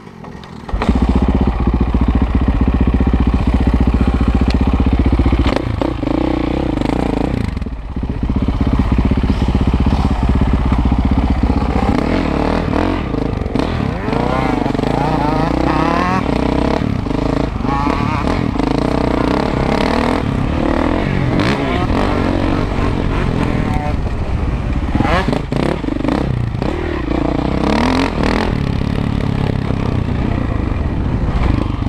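KTM 525 SX four-stroke single-cylinder dirt bike engine under way on a trail, heard close up from the rider's helmet. It comes in loud about a second in, holds high revs for a few seconds, then repeatedly rises and falls as the rider shifts and throttles on and off.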